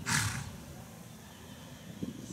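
A horse gives one short, loud snort, blowing air out through its nostrils right at the start. After it, faint, soft trotting hoofbeats in arena sand carry on underneath.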